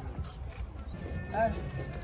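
Busy livestock-market bustle: handlers' voices over a steady low rumble, with one short, sharp pitched call about one and a half seconds in.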